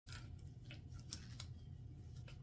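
Light clicks and rustles as a gloved hand lifts a gallon paint can by its wire handle: about five short sharp clicks over a steady low hum.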